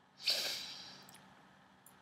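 A woman blowing out one audible breath through pursed lips, a sigh that starts sharply and fades away within about a second.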